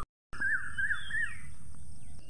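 Nature ambience of birds and insects: a small bird chirps three times in quick succession over a steady high insect buzz, after a brief dropout of silence just at the start.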